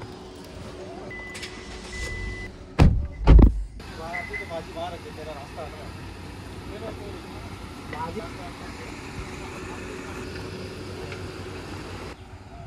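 A steady chime tone from inside a Hyundai Grand i10, then two heavy thumps of the car's door being shut. After that the car's engine hums steadily as it pulls out over a cobblestone drive, with brief laughter near the end.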